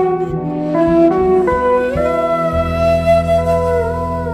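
Bansuri (Indian bamboo flute) playing a melodic phrase that steps between notes, slides up about two seconds in, then holds a long note, over low acoustic bass notes.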